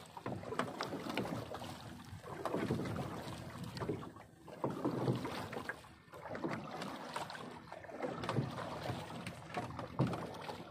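Water sloshing against the hull of a small wooden boat, swelling and fading about every two seconds, with small knocks and clicks.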